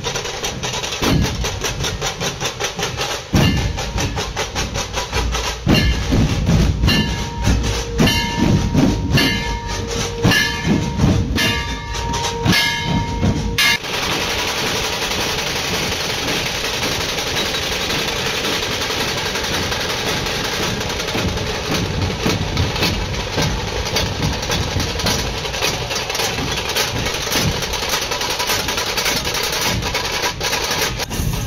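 Dhol drums of a dhol-tasha troupe playing fast, heavy, continuous drumming. For a few seconds midway a steady high note sounds over the beats. About halfway through the sound changes abruptly into a denser, even wash of drumming.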